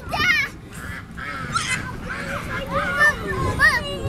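Young children's voices at play, calling out, with quack-like calls among them.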